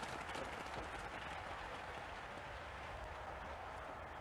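Spectators applauding: a steady, even patter of clapping.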